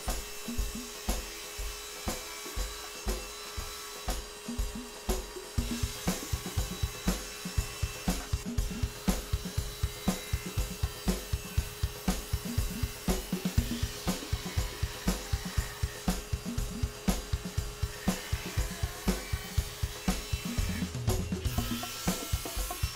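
Background music with a steady drum beat of kick, snare and hi-hat.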